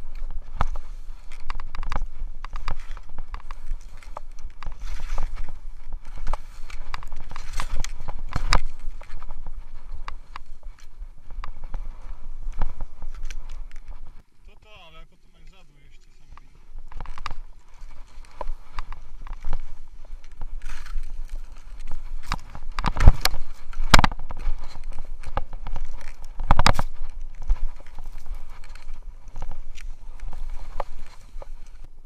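Skis running and scraping through snow, with wind rushing over the body-mounted camera's microphone and frequent sharp knocks and thumps from the skiing. About halfway through it goes quiet for a couple of seconds, with a brief voice-like sound, before the ski noise picks up again with its loudest knocks near the end.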